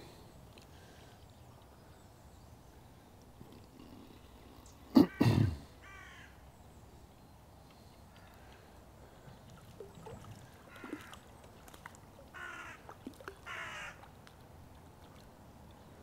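A crow cawing faintly several times, in scattered single calls through the second half. A short, louder double sound comes about five seconds in.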